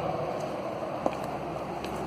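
Steady outdoor background noise with handling rustle from a handheld camera carried while walking, and one faint click about a second in.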